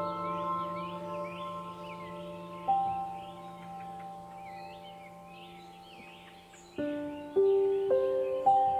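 Soft ambient background music of struck, bell-like notes that ring on and slowly fade, with a new chord striking near the end, over a bed of faint birdsong chirping.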